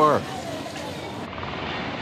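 Steady rush of an easyJet Boeing 737 airliner's jet engines at takeoff thrust as it rolls down the runway and rotates, heard clearly from about two-thirds of the way in, after a short stretch of quieter background noise.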